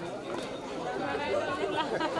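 Low chatter of people talking off-microphone, faint wavering voices with no one close to the mic.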